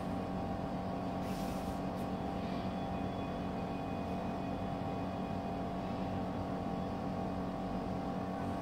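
Steady mechanical hum with a few constant tones, with a brief faint rustle about a second in.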